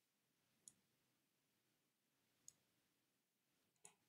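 Near silence broken by three faint computer mouse clicks, the first under a second in, one midway and one near the end.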